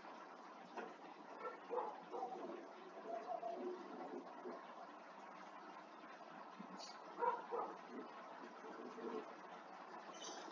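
Faint room hiss with a few soft, scattered background sounds, a little louder about two seconds in and again about seven seconds in.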